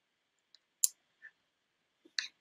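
A single sharp click from the presenter's computer as the presentation advances to the next slide, with two much fainter ticks, one shortly before and one shortly after it.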